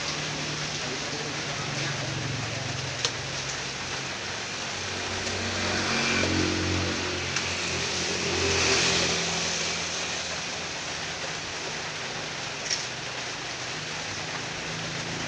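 Steady rain falling, with a motor vehicle's engine running low underneath that swells in the middle and fades again. Three short sharp knocks stand out, about three, seven and thirteen seconds in.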